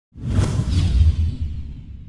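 Logo-intro whoosh sound effect over a deep rumble: it starts abruptly, peaks within the first second and a half, then fades away.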